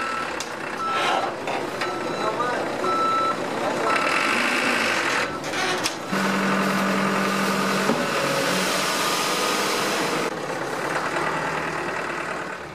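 Dump truck with its reversing beeper sounding in short, irregular beeps, then the truck working as its bed tips up, with a steady low hum for about two seconds and a rush of noise as the load of dirt slides out.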